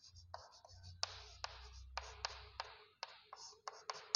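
Chalk writing on a chalkboard: quiet scratchy strokes broken by several sharp taps as the chalk strikes the board.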